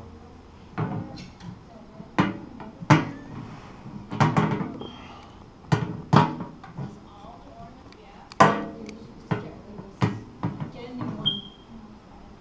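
Irregular metallic clacks and taps, about a dozen, as a folding metal rule and a metal part knock against the perforated metal mailbox panel while holes are measured. Some knocks ring briefly, and there is a short high ring near the end.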